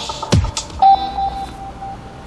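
Electronic logo sting at the start of a TV news report: a sharp hit about a third of a second in, then a single high beep that repeats as a fading echo.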